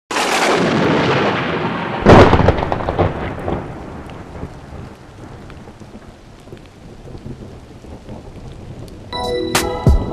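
Thunder and rain: a hiss of rain, then a loud thunderclap about two seconds in whose rumble dies away over several seconds. Music with sharp percussive hits starts near the end.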